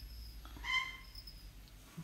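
One short, clear, high-pitched bird call about half a second in, over a low steady room hum.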